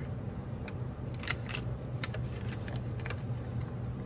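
A handheld corner-rounder punch (corner chomper) snapping through the corners of a paper envelope blank: a few sharp clicks, the loudest a close pair about a second in.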